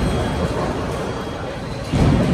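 Bowling alley din: the low rumble of bowling balls rolling down the lanes, with a sharp knock right at the start and a heavier thud near the end.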